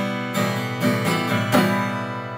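Acoustic guitar strummed in chords, with a fresh stroke about every half second.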